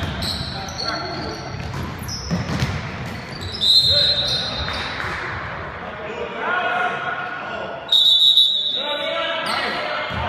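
Basketball game on a hardwood gym court: players shouting, the ball bouncing, and the sound echoing in the hall. Two loud, short high-pitched squeals, about four and eight seconds in, are the loudest sounds.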